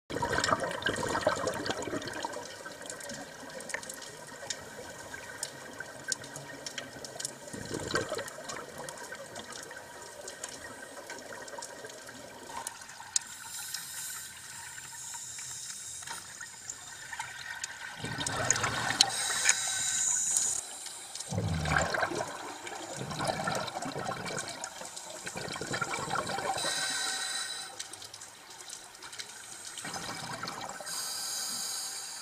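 Scuba divers' regulators underwater, exhaled air bubbling out in recurring bursts a few seconds apart, with scattered clicks and crackle between breaths.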